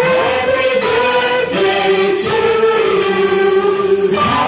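Music with a group of voices singing long held notes over a light steady beat.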